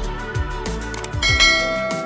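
Background music with a steady beat; about a second in, a bright bell chime rings out and fades. The chime is the notification-bell sound effect of a subscribe-button animation.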